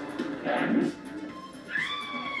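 TV drama soundtrack with music: a short noisy shout about half a second in, then near the end a long high wail falling slowly in pitch, an over-the-top dramatic scream.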